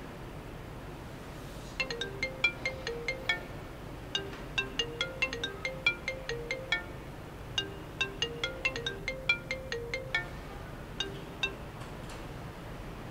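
A phone ringtone: a melody of short, high notes, repeated in phrases with brief pauses, starting about two seconds in.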